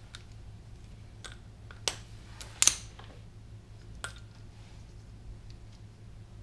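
A handful of small, sharp clicks and taps, about five spread unevenly, from hands handling a tool, its cord and the trailer wiring, over a faint steady low hum.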